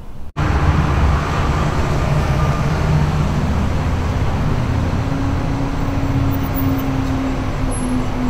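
Road traffic outside: a steady low rumble of passing vehicles with an engine hum that drifts slightly in pitch. It starts abruptly after a brief dropout at an edit.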